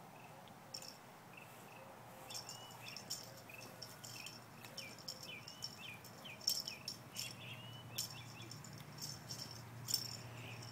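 Faint outdoor ambience of short, rising bird chirps mixed with rapid, rattling insect clicks, growing busier after the first couple of seconds.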